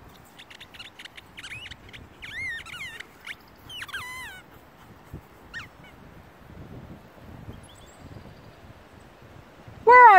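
A few short honking animal calls that fall in pitch, clustered in the first four seconds, over a faint outdoor background.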